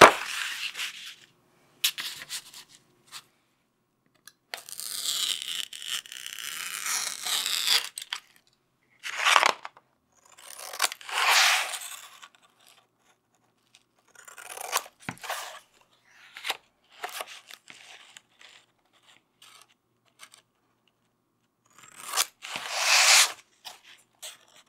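Cover material being handled, rubbed and smoothed onto hardcover book boards while the case is covered: separate crinkling, rubbing strokes of a second or two with short pauses and a few light clicks, the longest a rough scratchy rub about five seconds in.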